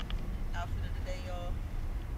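A person speaks a short, quiet phrase about half a second in, over a steady low rumble.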